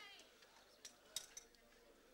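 Near silence with a few faint metallic clinks about a second in, from spanners and parts knocking on the tractor as it is reassembled.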